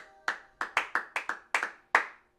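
Hands clapping: about ten quick, uneven claps, with a faint held note from the music underneath.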